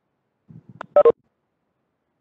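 Two quick, loud electronic tone blips about a second in, keypad-beep-like, after faint low rustling.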